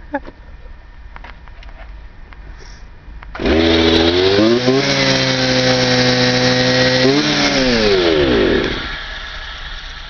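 A backpack brush cutter's small petrol engine starts up suddenly about a third of the way in and quickly climbs to a steady pitch. It runs for a few seconds, rises again briefly, then winds down with falling pitch and stops.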